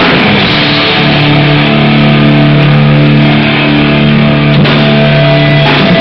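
Hardcore band playing live, heavily distorted electric guitars and bass with drums, low-fidelity and muffled in the highs. From about a second in, a chord is held steadily for several seconds and breaks off near the end.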